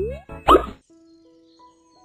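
Cartoon sound effects: a quick rising whistle, then a short, loud plop about half a second in, followed by a faint held note.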